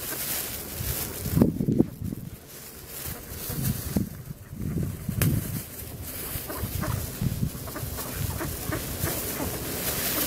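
Mallard ducks calling softly on and off, in short irregular bursts.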